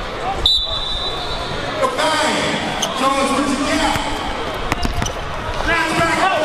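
A basketball bouncing on a gym floor in a few sharp knocks during one-on-one play, over the chatter of spectators in a large hall, with a short high tone about half a second in.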